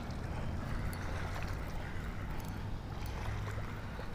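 Spinning reel being cranked steadily to bring in a hooked bass, a low steady whir with no break.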